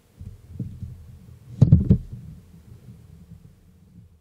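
Low rumbling and bumping on a handheld camera's microphone, with a loud cluster of thumps about a second and a half in, then dying away.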